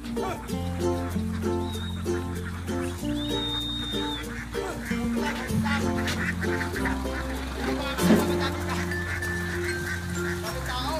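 Ducks quacking repeatedly over background music with a steady bass line. There is a sharp, louder sound about eight seconds in.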